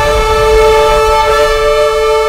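Cinematic orchestral music: a long held brass note over a deep rumble that thins out about a second in.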